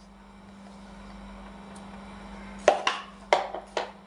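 About four sharp knocks or clicks in quick succession in the last second and a half, over a steady low hum.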